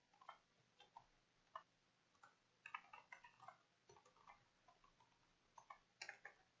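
Faint computer keyboard typing: irregular keystroke clicks, singly and in quick runs, over near silence.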